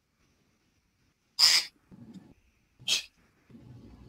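Two short puffs of breath noise, the first about one and a half seconds in and a shorter one near three seconds, with a faint low rustle between.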